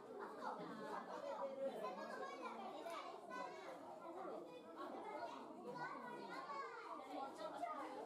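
Overlapping chatter of many people, with children's voices among them, running on without a break.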